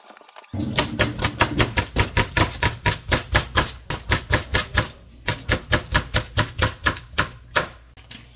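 A kitchen knife chopping on a cutting board in quick, even strokes, about four a second, with a short break about five seconds in.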